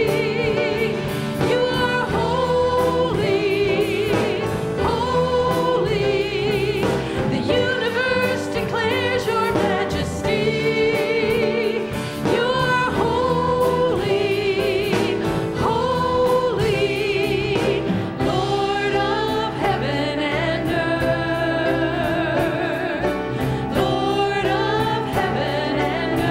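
Live praise band playing a worship song: several women singing together into microphones with vibrato, backed by drums, guitar and keyboard.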